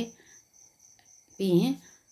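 Speech: a single short spoken word about three-quarters of a second long, after a pause, over a faint steady high-pitched tone.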